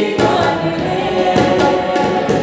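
Several men singing a Hindi song together to the steady chords of a harmonium, with tabla strokes keeping the beat.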